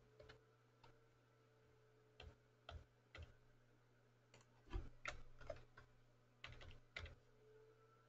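Faint, irregular keystrokes on a computer keyboard, a dozen or so scattered clicks with pauses between them, over a low steady hum.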